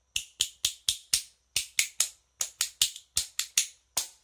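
Two metal spoons held back to back in one hand and played as a percussion instrument: a run of sharp clacks, about four or five a second, in short groups with brief pauses. The tone is a bit clacky because the player has not yet found the right sound.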